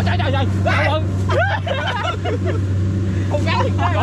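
A combine harvester's engine running with a steady low hum, under several men's excited voices calling out.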